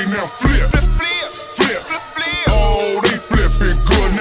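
Live hip hop performance through a club sound system: a heavy bass beat with regular drum hits and hi-hats, and a rapper's voice over it.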